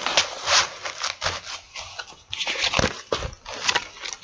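Cardboard insert and a soft insulated fabric lunch box being handled: an irregular run of rustling, scraping and crinkling as the cardboard is slid back inside, with a short lull about halfway.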